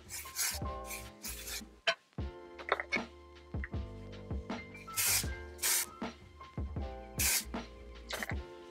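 Hair-product sprays misted onto hair in several short hissing bursts, over quiet background music.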